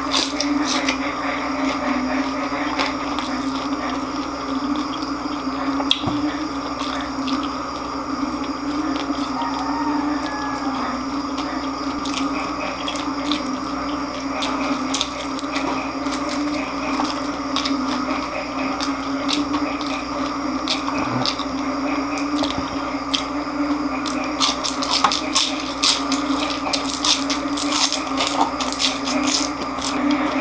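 Close-up eating sounds of deep-fried chicharon bulaklak (crisp fried pork intestine) being chewed, with scattered sharp crackles and a dense run of crunching from about 24 s on, over a steady low hum.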